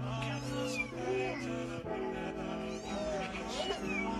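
Background music with steady held chords, with kittens meowing several times over it.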